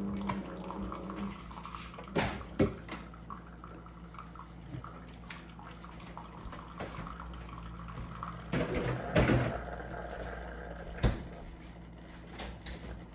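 Single-serve pod coffee maker brewing into a mug: a steady low hum with liquid trickling, broken by a few sharp knocks and a louder noisy spell about nine seconds in.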